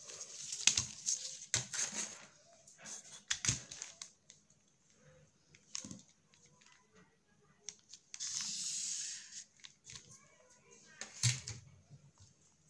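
Stiff brown pattern paper rustling and crinkling as it is handled, with several sharp taps of a ruler and marker against the paper and table. About eight seconds in, a steady scratchy stroke lasting just over a second: a marker drawn along a ruler across the paper.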